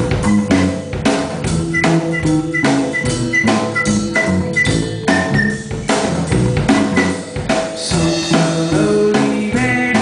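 Live rock band playing: a drum kit keeps a steady beat under electric bass and acoustic guitar.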